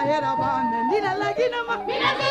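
A woman singing in a wavering, ornamented line that slides between notes, over instrumental backing with a steady beat.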